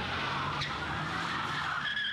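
Cars driving past close by, a steady rush of tyre and road noise on the asphalt, with a short high squeal near the end.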